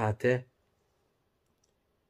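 A man's voice speaking for the first half second, ending a phrase, then silence with the background cut out completely.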